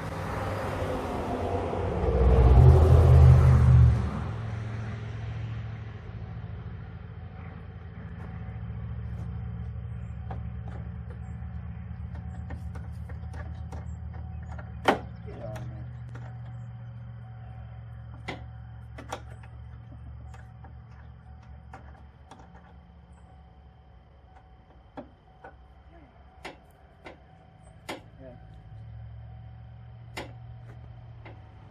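A headlight adjustment tool working a car's headlight adjuster screw, giving a dozen or so scattered sharp clicks in the second half, over a steady low hum. The first few seconds hold a loud rushing rumble.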